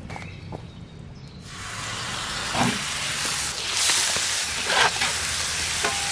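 Oiled raw ground beef sizzling against a hot cast-iron griddle. The hiss starts suddenly about a second and a half in, swells around the four-second mark, and has a few soft knocks over it.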